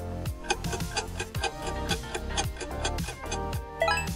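Quiz countdown timer music: a steady beat under fast clock-like ticking. A quick rising run of chime notes comes just at the end, as the timer runs out.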